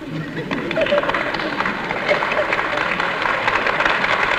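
Audience applauding, with some voices among the clapping; it swells over the first second and then holds steady.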